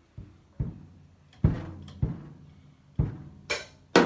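Drum kit played with wooden drumsticks: slow, uneven single strokes on the drums, about six, then a cymbal crash near the end.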